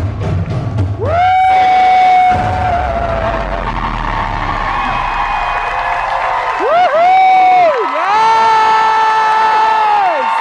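Live stage-musical finale: a female singer belting several long, high held notes, each sliding up into the pitch, the longest near the end, over the band and an audience cheering and whooping.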